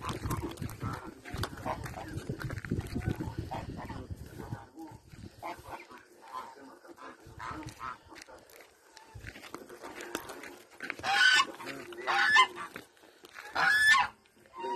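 Domestic waterfowl honking repeatedly, with the two loudest honks near the end. A low rumble on the microphone fills the first few seconds.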